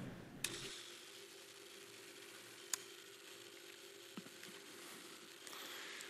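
Quiet room tone with a steady low hum and a few faint, isolated clicks, from a headset microphone being handled and put on.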